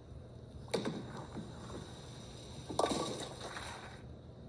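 A bowling ball lands on the lane less than a second in, and about two seconds later hits the pins with a sharp crash that rings on briefly. It is a televised match heard through a TV's speaker.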